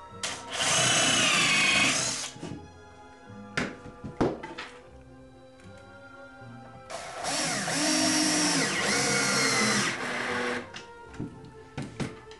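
Cordless drill running in two bursts, about two seconds and then about three and a half seconds, its motor whine dipping and rising in pitch as it drills and drives into pine. A few sharp knocks between the bursts, over steady background music.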